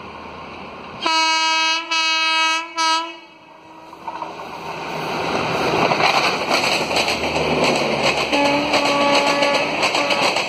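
An Indian Railways WAP-4 electric locomotive's horn sounds three blasts, two long and one short, about a second in. The train then passes close, building into a rush of rhythmic wheel clatter over the rail joints. A lower-pitched horn sounds for over a second near the end.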